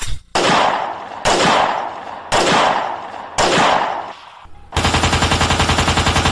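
Gunshot sound effects: four single shots about a second apart, each with a long echoing tail, then a quick burst of machine-gun fire at about ten rounds a second lasting a second and a half.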